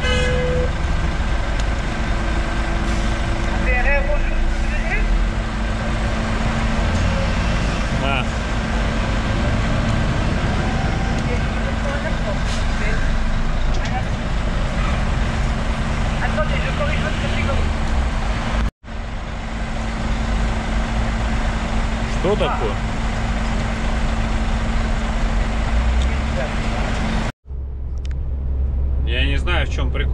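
Heavy truck's diesel engine idling steadily while stopped at a motorway toll machine, with a short beep at the start as the toll card goes in. Near the end it gives way to the engine running on the move.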